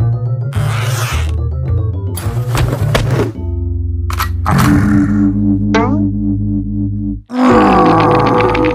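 Cartoon music score with comic sound effects: a sudden start into low sustained notes, several swelling bursts of noise, a quick rising flourish about six seconds in, then after a brief break a loud blast near the end, a cartoon brute's angry roar.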